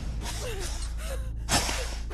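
A person's short, sharp gasp about one and a half seconds in, over a steady low rumble.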